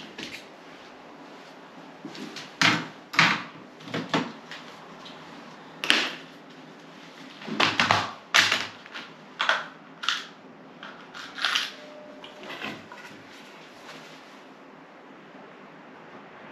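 Small plastic compartment box of pocket-hole screws being handled and opened: a string of sharp plastic clicks and rattles, about a dozen, with the loudest cluster about eight seconds in, dying away a few seconds before the end.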